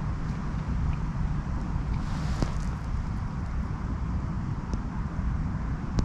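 Wind rumbling and buffeting on the microphone over a steady outdoor background.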